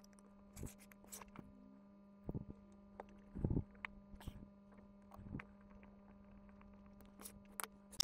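Faint handling noises of a circuit board being pushed and shifted into a plastic enclosure: scattered small clicks and scrapes, with a few louder knocks a few seconds in, over a steady low hum.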